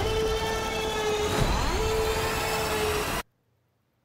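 Sound design of a spaceship crash: heavy rumbling noise under a repeating tone that slides up and holds, about every two seconds. It cuts off suddenly a bit over three seconds in, leaving silence.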